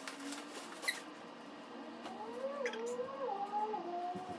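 A woman humming a short wordless tune in stepped, held notes during the second half, with a few brief rustles of plastic packaging as she unwraps a dress.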